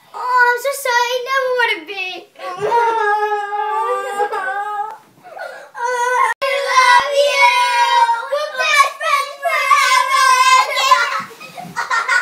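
A young girl's high, wordless voice held in long notes that waver in pitch, about four stretches with short breaks between them.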